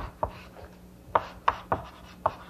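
Chalk writing on a blackboard: a run of short sharp taps as each stroke of the letters lands, about six in two seconds, with a pause near the middle.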